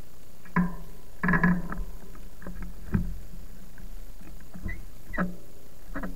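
A handful of short creaks and knocks from a stationary e-bike and its handlebar camera, the loudest cluster about a second in, over a steady hiss.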